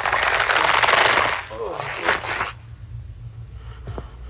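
Film sound effect: a loud crackling hiss lasting about a second and a half, then a shorter, fainter burst of the same about two seconds in.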